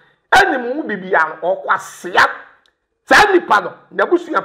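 Speech only: a man talking loudly and forcefully, in two stretches separated by a short pause.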